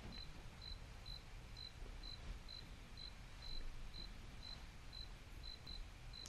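Faint low hum of room tone, with a quiet series of short, high-pitched chirps about twice a second.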